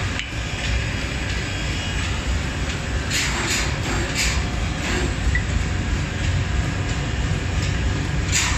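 Forging-shop machinery running with a steady low rumble, with a few light metal clanks about three and four seconds in.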